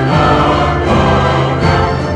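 Choral music: a choir singing held chords over an orchestral accompaniment, the chords changing every half second or so.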